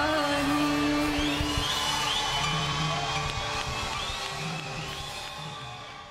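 A singer's long held final note ends about one and a half seconds in, over the band's closing chord. Then the audience cheers and whoops over the fading music, and it all fades out near the end.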